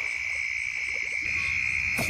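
A chorus of night insects making a steady, unbroken, high-pitched trill.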